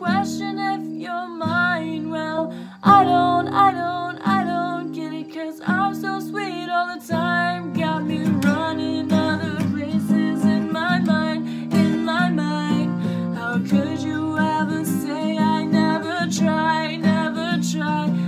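A woman singing solo with her own strummed acoustic guitar accompaniment, the voice wavering with vibrato over steady chords.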